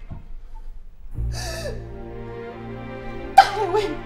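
A woman crying: a sharp sobbing gasp about a second in, then a louder sob with wavering pitch near the end, over soft sustained background music.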